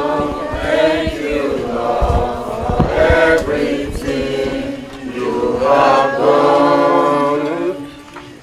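A group of people singing a thank-you song together in long, held phrases.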